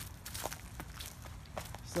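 Footsteps walking over dry leaves and dirt onto a concrete path: a few soft, irregularly spaced steps.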